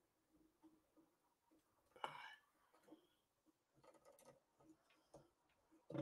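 Near silence, broken by faint scattered clicks and handling noises from a phone being moved into position, with one brief louder sound about two seconds in.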